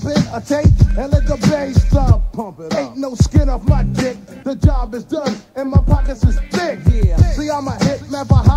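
A 1993 hip hop track played from a cassette tape: a rapper delivering verses over a beat with deep, repeated bass hits.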